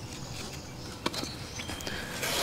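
Steel shovel digging and scraping in soil around a buried drain pipe, with one sharp click about a second in.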